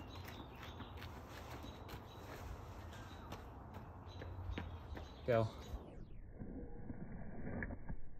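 Faint footfalls of a light jog in running shoes on brick pavers, heard as soft scattered taps over quiet outdoor ambience. About six seconds in, the sound turns dull and muffled.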